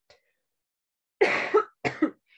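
A woman coughing twice in quick succession, starting a little over a second in.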